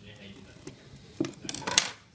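A few sharp knocks and clacks of a steel roofing square and a block of timber being handled and set down on a workbench, starting a little past halfway and loudest near the end.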